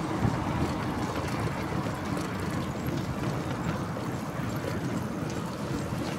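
Steady wind rushing over the microphone of a handlebar-mounted camera on a road bike at riding speed, mixed with the rolling noise of the tyres on asphalt.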